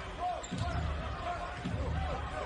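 A basketball being dribbled on a hardwood court, low bounces about a second apart, over steady arena crowd noise.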